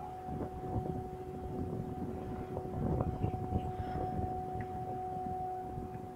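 Heavy cargo-lifting machinery: a steady mid-pitched tone over a low engine rumble and scattered knocks and clanks as the ship's crane lowers a railcar onto a multi-axle trailer.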